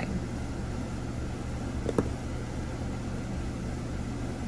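Steady low background hum with one short, sharp click about two seconds in: jewelry pliers working a tiny metal jump ring.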